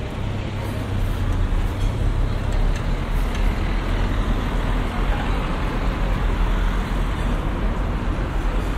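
Steady low rumble of motor traffic in the street, getting a little louder about a second in.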